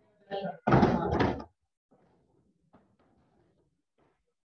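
Strikes landing on freestanding heavy punching bags: a short run of loud thuds about a second in, heard through a video-call microphone.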